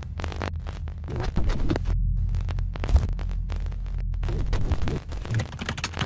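Glitchy logo-reveal sound effects: rapid, irregular crackling and clicking over a low steady hum, with one sharp hit about three seconds in.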